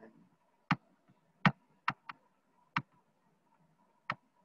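Computer mouse button clicking four times at uneven intervals, each a single sharp click.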